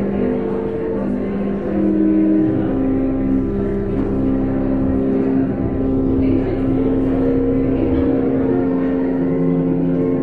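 Church organ playing slow, sustained chords, the notes held for several seconds before moving, with a low bass note coming in underneath a couple of seconds in.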